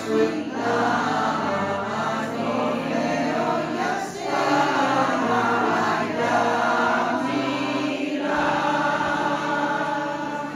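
Women's choir singing in parts, with accordion accompaniment holding low notes underneath; the singing breaks briefly between phrases about four seconds in and again near eight seconds.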